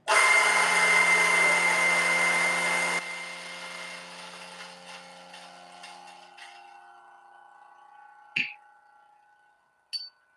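DF83 electric flat-burr coffee grinder motor starting abruptly and running steadily with a whine for about three seconds, then switched off and winding down over the next few seconds. A single short knock about eight seconds in.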